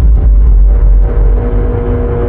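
Logo-intro sound effect: a loud, deep bass rumble, joined about a second in by a steady held tone.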